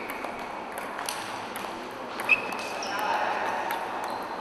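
Table tennis balls clicking sharply against bats and tables in several short ticks, the loudest about two seconds in with a brief ring, over the background chatter of a sports hall.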